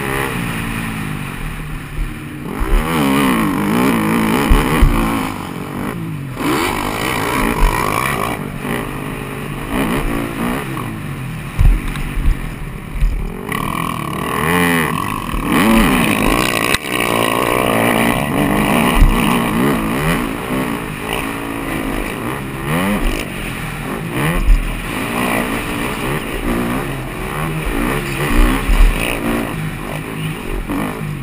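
KTM 250 SX-F four-stroke single-cylinder motocross engine revving up and falling off again and again as it is ridden hard through the gears, with a few sharp knocks along the way.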